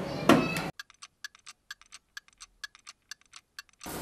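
A sandwich maker's lid shut with a knock, then a clock ticking quickly and evenly over silence: a ticking sound effect standing for the sandwich grilling.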